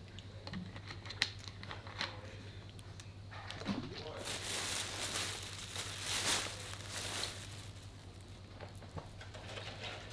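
A thin plastic bag being handled and crinkled, loudest and densest from about four to seven and a half seconds in, with light rustles and clicks around it.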